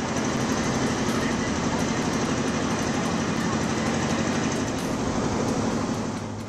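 Fast, swollen floodwater rushing in a steady, loud torrent, with a steady low tone underneath.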